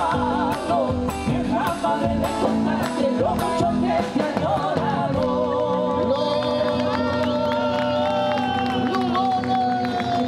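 Live folk band playing a chacarera on electric guitar, acoustic guitar and drum kit. About five seconds in, the rhythm stops and a long chord rings on, with one sustained note sliding slowly down in pitch as the song ends.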